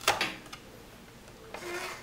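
A sharp plastic click as an onion is pressed onto the blade plate of a Spirooli spiral vegetable slicer, then quiet handling of the slicer with a faint rub near the end.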